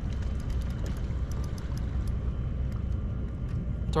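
Steady low outdoor rumble on open water, with faint scattered light ticks.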